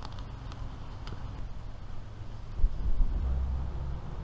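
A low rumble that gets louder about two and a half seconds in, over a few faint scrapes and ticks of a filleting knife on a plastic cutting board as a fish is filleted.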